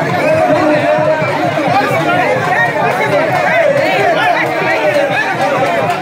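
A dense crowd talking and calling out all at once, many voices overlapping at a steady, loud level.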